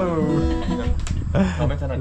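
A guitar playing informally, with voices over it.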